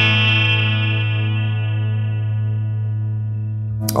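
Electric guitar (Fender Stratocaster) chord picked once and left to sustain through the Flamma FS03 digital delay pedal's Liquid mode, a delay with a step-phaser sweep. The chord rings at a steady level while its brightness slowly fades.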